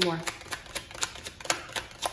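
A deck of tarot cards being shuffled by hand: a steady run of crisp clicks, about four a second.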